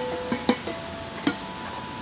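Hand strikes on stainless-steel outdoor park drums (playable "outdoor bongos"). Each strike rings on with a short pitched tone, about three strikes roughly half a second to a second apart.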